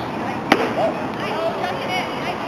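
A pitched baseball smacks into the catcher's leather mitt with one sharp pop about half a second in, followed by voices calling out.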